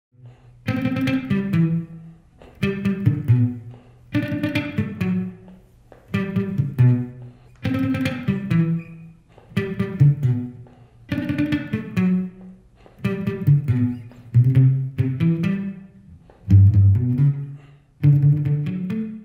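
SG-style electric guitar playing a short reggae riff of low single notes. The phrase is repeated about ten times, a new one starting roughly every two seconds.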